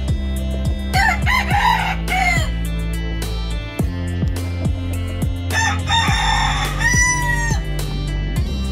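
Thai bantam rooster crowing twice, about a second in and again near the middle; the second crow ends on a long held note. Background music with a steady beat plays throughout.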